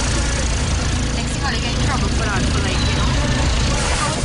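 Indistinct voices over a steady low rumble of outdoor field sound, with a few short falling voice sounds around the middle.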